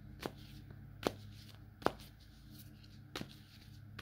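Tarot deck being shuffled by hand, heard as four faint, sharp card snaps about a second apart over a low steady hum.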